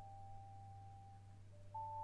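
A quiet passage of mallet percussion: a few soft, long notes ring on and fade, and new notes are struck softly about three-quarters of the way in. A low steady hum sits under them.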